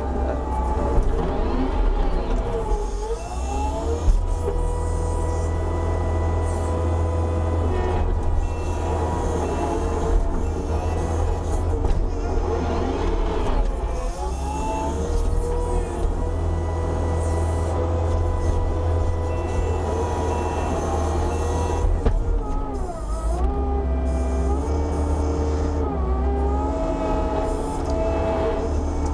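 Kubota SVL75-2 compact track loader running and being worked: a steady diesel engine rumble under tones that rise and fall as the machine is driven and the bucket and hydraulic pilot controls are used.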